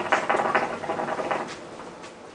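Hookah water bubbling in the base as smoke is drawn through the hose: a rapid, dense gurgle lasting about a second and a half, then fading.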